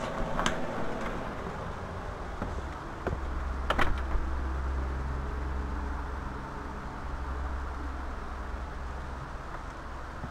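A door being opened and shut: a light click near the start, then a louder knock about four seconds in. A steady low rumble of outdoor air follows once outside.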